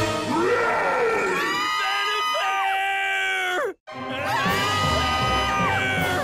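Several cartoon voices screaming in fright together, each held and then falling off, heard twice with a sudden short break between, over music.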